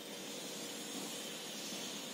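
Steady, faint hiss: the background noise of a voice recording, with no other sound.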